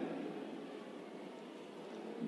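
Faint steady hiss of background room tone and recording noise, with no distinct event.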